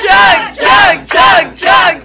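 Loud rhythmic shouting by several voices: four chant-like shouts about half a second apart, each rising and falling in pitch.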